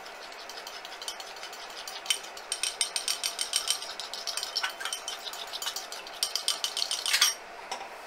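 Metal fork whisking grated cheese and pasta cooking water in a glass bowl, the tines clicking rapidly against the glass. The quick run of clicks starts about two seconds in and stops a little after seven seconds.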